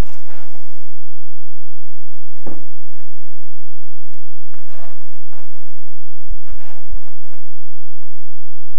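A few soft low thumps and scattered rustling noises over a loud steady low hum.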